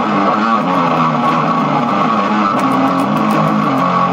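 Electric guitar played continuously through a freshly repaired late-1980s Peavey Century 200H guitar amplifier head and its speaker cabinet, sounding loud and steady.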